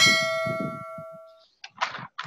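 Bell-like chime sound effect of a pop-up subscribe-button animation: one struck ding that rings on with several clear tones and fades away over about a second and a half.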